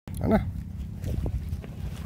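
A man's brief spoken remark near the start, over a steady low rumble.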